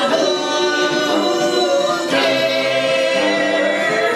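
A group of voices singing together in long held notes, with the band playing underneath.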